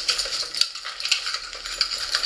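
Small gear items clicking and rattling against each other as they are pushed by hand into a nylon backpack pocket, with fabric rustling and a few sharp clicks.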